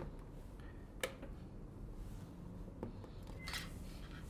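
Sharp clicks and light handling noise from banana-plug test leads being pushed into a trainer panel's power-module sockets and the module being switched on: one distinct click about a second in, a softer click near three seconds and a brief rustle after it, over a low room hum.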